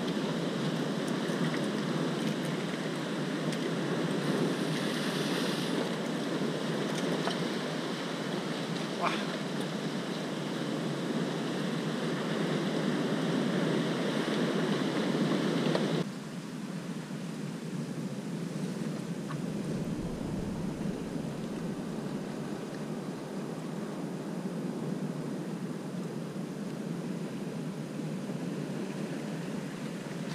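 Sea surf washing over a rocky shore, with wind on the microphone, as a steady rushing noise. About 16 s in it drops suddenly to a quieter, softer hiss.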